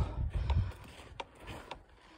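A few soft footsteps on a sandy dirt road, faint short crunches about half a second apart over a low rumble.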